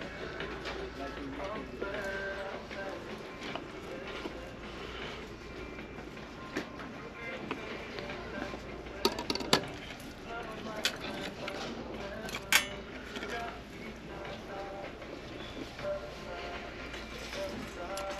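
Shop background of faint music and distant voices, with a few sharp clinks of glass candle jars being handled about halfway through.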